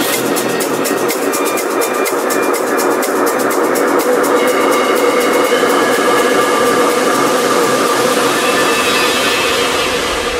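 Electronic dance music from a progressive house DJ mix in a breakdown: held synth tones over fast, even ticking percussion, with the bass and kick drum dropped out.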